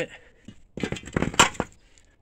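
About a second of rattling and scraping from rusty metal parts being handled, with one sharp click partway through.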